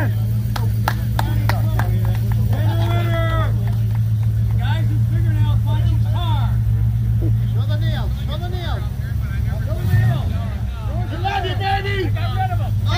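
Classic car's engine idling with a steady low rumble as the car rolls slowly past at walking pace; the rumble drops a little about eight seconds in. Crowd voices and a few sharp clicks in the first two seconds sit over it.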